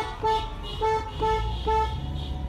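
Car horn honking in a quick series of short toots, about five in two seconds, over the low rumble of a car, heard from inside the car's cabin.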